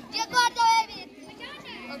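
Several boys shouting and calling out over one another, with one loud, high-pitched shout about half a second in.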